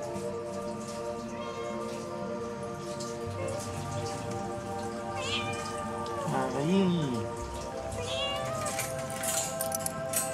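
A domestic cat meows once, about six and a half seconds in, a single call rising then falling in pitch, over background music with steady held notes.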